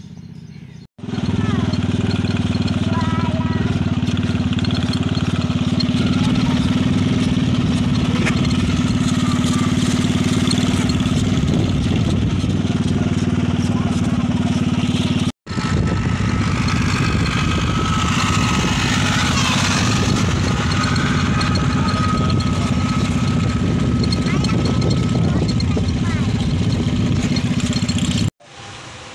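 Motorcycle engine running at a steady cruising speed, heard from the pillion seat while riding. The sound stops for a moment about halfway through.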